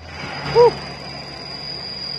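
Steady outdoor road noise with a low rumble, and a short note that rises and falls about half a second in.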